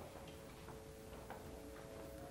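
Faint steady drone of two held tones from an electronic shruti box, setting the singer's pitch before Carnatic classical singing, with a few faint clicks as the box is handled.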